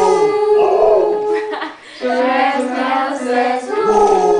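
People singing a simple sing-along song together with an Alaskan/Siberian husky howling along in long held notes. The singing breaks off briefly a little under two seconds in, then carries on.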